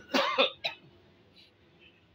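Brief vocal sounds from a person: a loud burst about half a second long near the start, then a shorter one right after, over low background noise.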